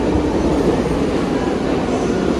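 New York City subway train moving along a station platform: a loud, steady rumble of the cars on the rails.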